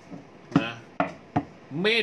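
A person coughing three times, short sharp coughs about half a second apart, followed by speech near the end.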